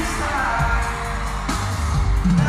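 Live pop music played loud through an arena sound system: a male voice singing over backing with a strong bass.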